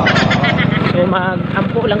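Dirt bike engine running steadily while riding, a continuous fast pulsing, with a voice talking over it about a second in.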